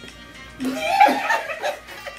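A woman laughing, starting about half a second in, over quiet background music.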